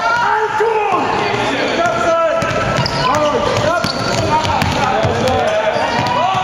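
Basketball bouncing on a hard sports-hall floor with sneakers squeaking as the players run, the squeaks coming in many short rising-and-falling chirps throughout.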